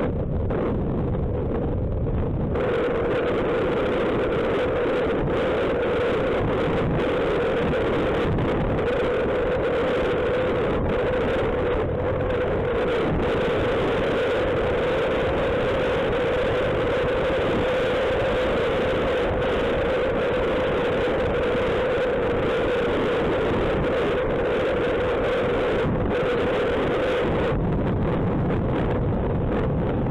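Suzuki Burgman scooter running steadily at road speed, its engine hum mixed with a continuous rush of wind over the microphone.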